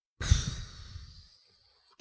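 A long sigh breathed close into a microphone, starting with a low puff of air on the mic about a quarter second in and trailing off over about a second.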